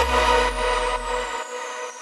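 Closing bars of a progressive house track: a held low bass note and a sustained chord ringing out and fading, with a falling sweep effect running through it. The bass cuts off about one and a half seconds in.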